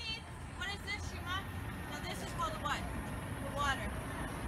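Birds chirping: short, arched calls repeated every half second or so, over a low steady rumble.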